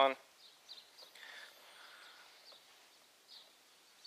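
Quiet room tone with a few faint, short high chirps from birds outside.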